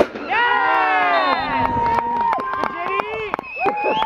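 A sharp crack right at the start, from the shot on goal, then several players shouting and yelling in celebration of the goal, with long held shouts.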